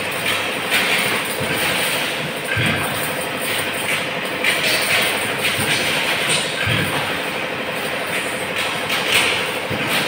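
Steady clattering run of workshop machinery, likely the chain link mesh-weaving machine, with a low thud every few seconds.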